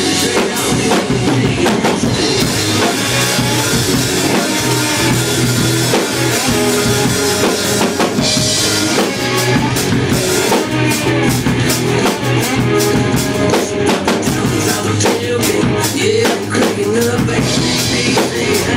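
Drum kit played along to a loud country-rock recording, in an instrumental stretch with no singing: a steady beat of drum strokes, with cymbal crashes about eight seconds in and again near the end.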